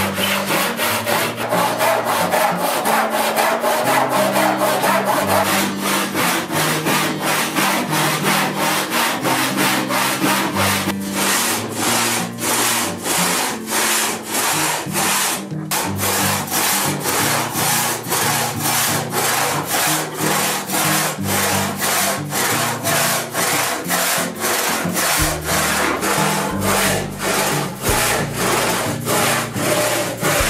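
Western handsaw with a wooden handle cutting through a reclaimed barn timber, a 6x6 beam. Its rasping strokes keep a steady, even back-and-forth rhythm, with background music underneath.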